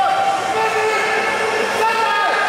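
Several voices yelling long, drawn-out shouts of encouragement that overlap, from a crowd and teammates urging on a powerlifter under a heavy squat.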